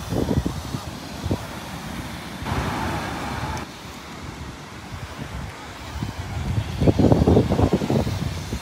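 Wind buffeting the phone's microphone in gusts, strongest at the start and again about seven seconds in, over the hiss of ocean surf, with a wave washing in near the middle.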